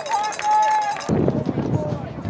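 People shouting and cheering in long, rising and falling calls. About halfway through, the calls are cut off abruptly and replaced by a low rumble of outdoor field noise.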